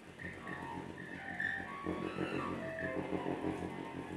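Live improvised music: several held high tones that come and go over a low, pulsing layer.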